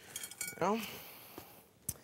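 Handling sounds as ground pork is tipped from its paper wrapping into a glass mixing bowl: brief paper rustling with a light clink, then a sharp click near the end.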